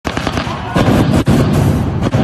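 Arena stage pyrotechnics going off: a dense run of loud crackling bangs that gets louder about three-quarters of a second in.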